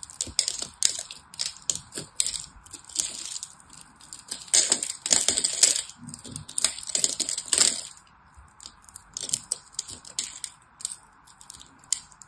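Craft knife blade cutting into a bar of soap scored in a grid, with small cubes cracking off in quick crisp crunches. The crunches come thickest in the middle, with a short lull about two-thirds through before the cutting picks up again.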